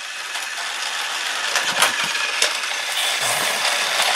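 Battery-powered Fisher-Price TrackMaster Thomas toy engine running on plastic track, its small geared motor whirring and growing louder, with a few sharp plastic clicks and rattles, the plainest about two seconds in.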